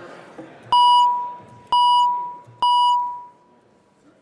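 Three strikes of the presiding officer's gavel about a second apart, each ringing out as a clear tone that dies away over about half a second.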